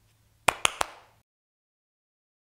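Three quick hand claps about half a second in, each short and sharp.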